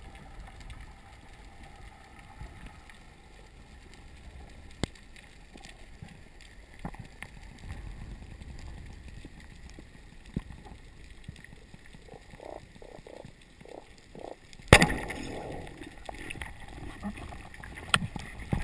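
Underwater sound picked up through a submerged camera: a faint low rumble with scattered sharp clicks, a quick run of soft knocks, then one loud sudden burst followed by a short rushing noise near the end.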